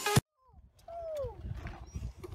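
Background music cuts off abruptly at the start, followed by a short silence. About a second in, a single call drops in pitch over a faint outdoor rumble.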